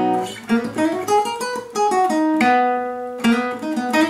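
Acoustic guitar being played: a quick run of single picked notes moving up and down, then two chords struck about a second apart.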